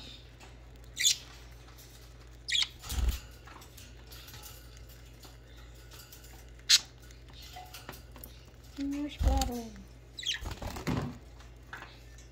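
Several short, high chirps from pet budgerigars feeding on seed from a hand, with a few low bumps and a flutter of wings as a bird flies in about nine seconds in.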